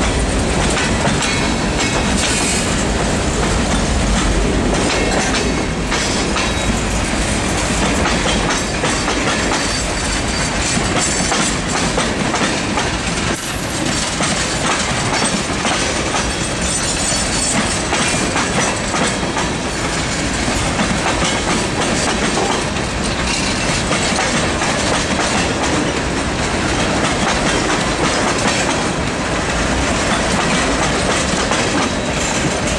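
Tank cars and covered hoppers of a freight train rolling steadily past: continuous wheel and rail noise with a repeating clickety-clack of the wheels.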